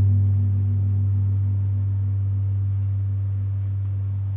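A large flat gong on a floor stand ringing on after a soft-mallet strike: a deep, low hum with overtones that waver slowly, fading gradually.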